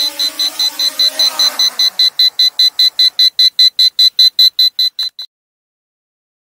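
Rapid, high electronic beeping, about six beeps a second, from a Dragonfly KK13 camera drone on its low-battery warning; it cuts off suddenly about five seconds in. Under it, the drone's motors hum steadily after landing and fade out about two seconds in.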